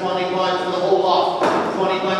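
A man's voice calling at an auction, the auctioneer's rapid patter, carrying in a large hall. There is one sharp knock about halfway through.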